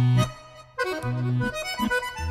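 Accordion solo: a right-hand melody over left-hand bass notes and chords. The playing breaks off briefly about a quarter second in, then comes back just under a second in with a rising run of notes.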